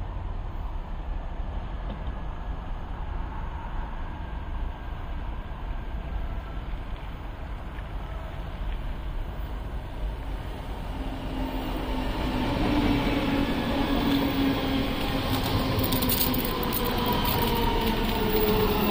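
Electric passenger train approaching and pulling into the station. A low rumble grows louder, and from about halfway a whine of several tones comes in and slowly falls in pitch as the train slows and runs past close by.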